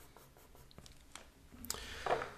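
Faint scratching of a pencil drawing on a paper pad, with a few light ticks; near the end a louder rub as the hand moves across the paper.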